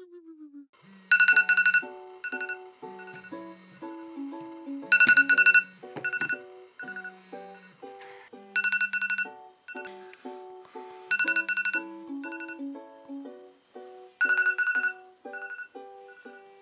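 Upbeat background music of short plucked notes over a low bass line, with loud bursts of rapid, high, ringtone-like trilling about every three seconds.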